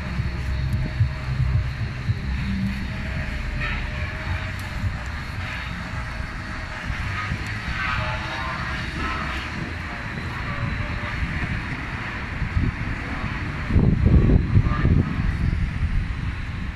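City street ambience: a steady low rumble of traffic, swelling into a louder rumble for a couple of seconds near the end.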